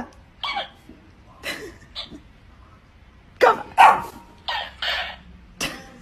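A string of about eight short dog barks and yips, irregularly spaced, with a quicker run of them in the second half.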